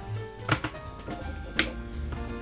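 Background music with two short, sharp plastic clicks, about half a second and a second and a half in, from the blender jug's plastic lid and its locking tab being handled.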